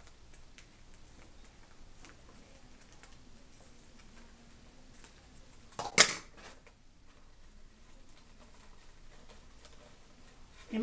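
Faint rustling and small clicks of a foil ribbon being handled, with one loud, sharp clack from a pair of scissors about six seconds in.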